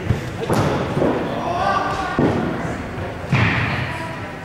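Three sharp knocks of cricket balls being hit and landing, echoing in a large indoor sports hall, the last the loudest, over faint background voices.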